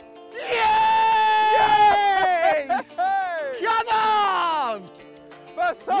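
A man's long, high-pitched celebratory yell that falls in pitch at its end, followed by a second shorter yell that falls away, over background music.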